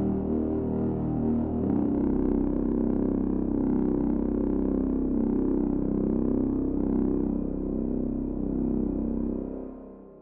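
Vienna Smart Spheres "Uncontainable Anger" bass preset played from a keyboard: a low, dense, sustained sound-design drone built from layered tones. It fades out about nine seconds in.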